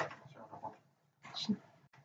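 A pet animal making soft, brief sounds close by, with one short call about a second and a half in.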